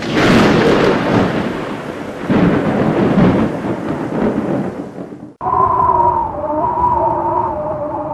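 Thunder sound effect: two heavy rolls about two seconds apart, each fading away. About five seconds in it cuts off abruptly and a held, wavering musical tone of a few pitches takes over.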